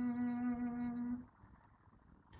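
A singer's voice holding the last note of a line of a Hindi devotional chant, steady in pitch, ending just over a second in and leaving faint low background noise.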